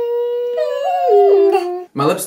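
Two voices singing a long held note. About half a second in, a second voice joins and the two step apart in pitch, one rising and one falling, before breaking off just before speech begins.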